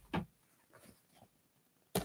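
Mostly a quiet room, then a single sharp tap near the end as a stencil dauber is dipped into an open pot of metallic paint.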